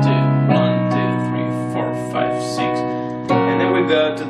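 Piano playing a slow chord pattern in B major: a bass chord with C sharp and G sharp in the left hand rings under single right-hand notes moving up and down. A new chord, F sharp over A sharp, is struck about three seconds in.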